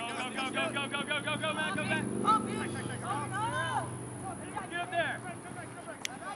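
Players' voices calling and shouting across the field in quick, short bursts, busiest in the first two seconds, over a steady low hum that fades out near the end.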